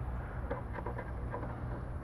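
Faint clicks and handling noise from a hand fitting a fuel pressure sensor into its fuel-line fitting, over a low steady rumble.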